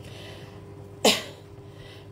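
A single short, sharp burst of breath from a person close to the microphone about a second in, over a faint steady hum of room tone.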